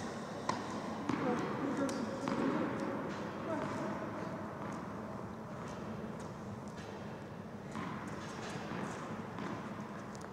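A few sharp knocks of a tennis ball bouncing on an indoor hard court in the first two seconds, with indistinct voices in the hall.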